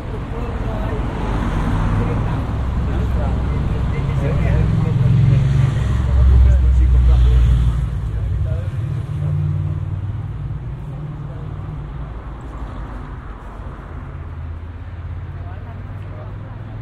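Street ambience: a motor vehicle passing close by, its low engine sound swelling to its loudest about six to eight seconds in and then fading, with people's voices chatting in the background.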